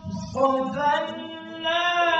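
A man reciting the Quran in a melodic chant, holding long notes that bend slowly in pitch. A short break for breath at the start, then the next phrase begins about a third of a second in.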